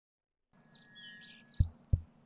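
Faint bird chirps with a thin steady whistle under them, then two low thumps about a third of a second apart near the end.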